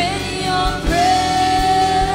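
A live worship band playing a slow song: a female lead vocalist sings, gliding up into a long held note about halfway in, over guitars, keyboard, bass and drums with a steady kick-drum beat.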